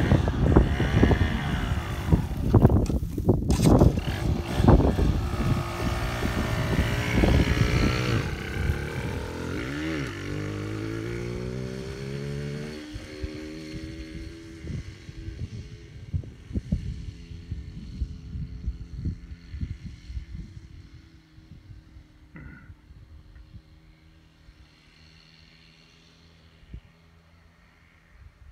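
Yamaha TDR 125's two-stroke single-cylinder engine revving hard as the motorcycle rides off, its note climbing in steps through the gears and fading into the distance over about twenty seconds. Wind buffets the microphone while the engine is loud.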